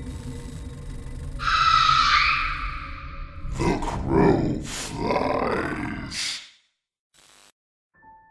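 Horror-style intro sound design over a low, dark ambient drone. A harsh screech comes in about a second and a half in, then deep, growling, echoing sounds that bend in pitch. Everything cuts off suddenly about six and a half seconds in.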